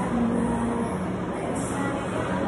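Fan air bike whooshing steadily as it is pedalled hard.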